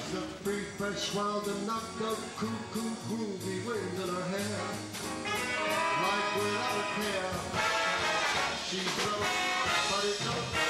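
A swing big band playing live, with its brass section prominent and building to its fullest sound in the second half.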